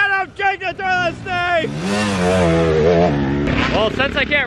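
Dirt bike engine revving in short bursts, its pitch rising and falling with the throttle for the first second and a half, then running at a lower, wavering note. A voice comes in near the end.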